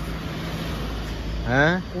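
A car's engine running close by, a steady low rumble, with a short voice exclamation near the end.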